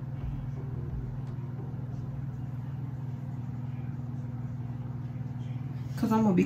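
A steady low hum with no distinct events.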